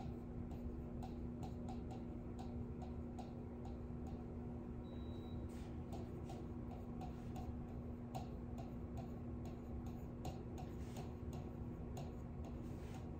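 A pen tapping and ticking against the glass of an interactive display screen while writing: a run of light, irregular clicks over a steady low room hum.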